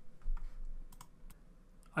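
A few separate sharp clicks from someone working at a computer, bunched around the middle, over faint room tone.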